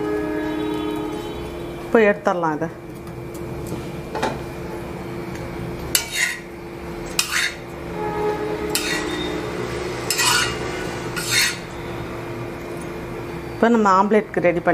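A metal kitchen utensil scraping and clinking against cookware in a run of short strokes, about one every second or so, over a steady low hum.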